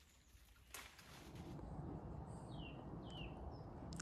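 Faint outdoor ambience with a low rumble that builds after a soft click about a second in. Two short falling bird chirps come in the second half.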